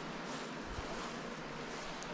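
Quiet outdoor background: a steady, even hiss, with a few soft low thumps about three-quarters of a second in.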